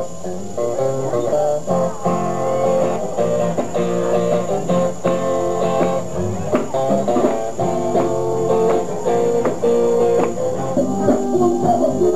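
Live band playing an instrumental passage with guitar to the fore, over bass, keyboard and a steady drum beat.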